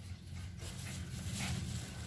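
Pembroke Welsh corgi panting faintly, with a few soft breaths and a low steady rumble underneath.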